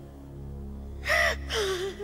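A woman sobbing: a loud voiced cry falling in pitch, about a second in and lasting about a second, over a low, sustained music backing.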